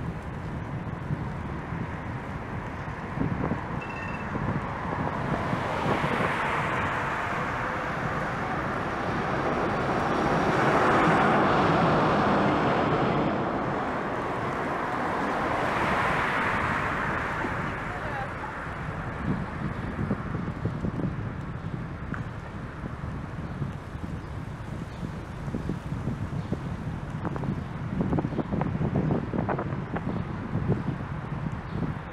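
Street traffic heard from a moving bicycle: steady wind on the microphone and road rumble, with cars passing close by that swell up and fade away three times, loudest near the middle. A few short knocks near the end.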